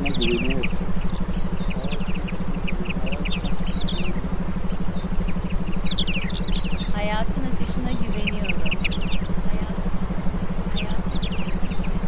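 Meditation background track: a steady low pulsing drone with short high chirps scattered over it, and a brief rising whistle about seven seconds in.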